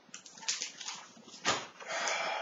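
Paper pamphlet rustling and crinkling as it is handled, with one sharper tap about one and a half seconds in.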